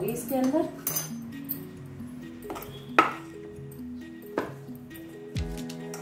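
A few sharp clinks of a steel spoon against a stainless steel mixing bowl as cornflour is added to the dough, the loudest about three seconds in, over background music with steady held notes.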